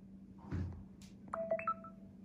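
A short electronic chime of about three quick beeps, about a second and a half in, over a steady low hum; a dull bump comes just before it.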